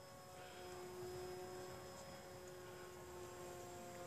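Faint, steady drone of a radio-controlled model airplane's motor and propeller flying high overhead, holding one pitch.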